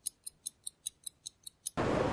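Clock-ticking sound effect: light, evenly spaced ticks, about five a second, over silence. It stops near the end as a steady outdoor noise comes in.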